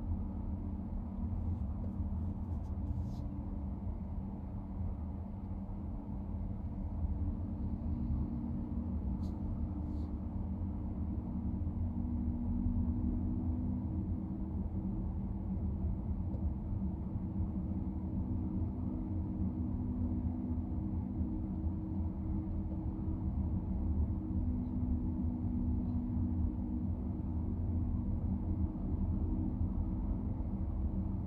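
Steady low rumble of a car's tyres and drivetrain heard from inside the cabin while driving in city traffic, with a faint hum. A few faint ticks come in a couple of seconds in and again about ten seconds in.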